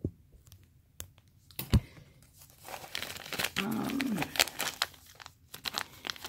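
Clear plastic zip-top bags crinkling and rustling as hands dig through them, busiest in the second half, with one sharp knock a little before two seconds in.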